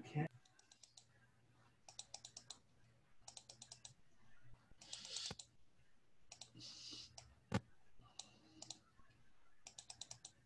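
Faint computer-keyboard typing in several short runs of quick clicks, with one louder single knock a little past the middle and a steady low hum underneath.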